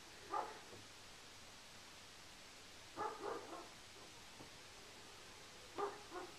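A dog barking faintly, in a few short barks: one about half a second in, a few around three seconds in, and a couple near the end.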